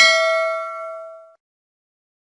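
Notification-bell sound effect: a single bell ding that rings out and fades away within about a second and a half.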